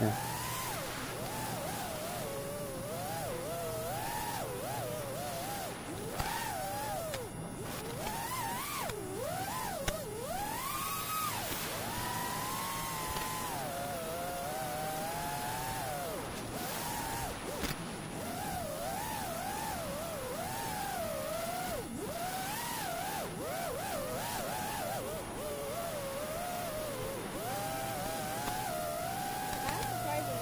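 FPV quadcopter's electric motors whining in flight, their pitch rising and falling continuously as the throttle changes.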